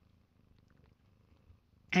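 Faint, steady purring of a mother cat resting just after giving birth. A woman's voice starts right at the end.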